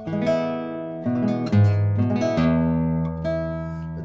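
A 1997 Germán Pérez Barranco 'Senorita' classical guitar, spruce top and maple body, short 587 mm scale, played with the fingers: a short passage of plucked chords and notes, each struck note ringing on and overlapping the next.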